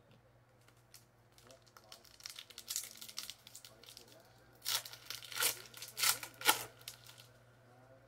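A trading-card pack's wrapper crinkling as it is handled, then torn open in several quick, sharp rips about five to six and a half seconds in.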